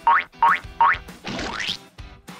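Cartoon sound effects over light background music: three quick rising "boing" sounds in a row, then a longer rising sweep near the end.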